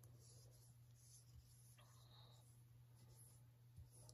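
Near silence: a low steady hum, with faint soft strokes of a foam brush spreading white acrylic paint on a hard wood board.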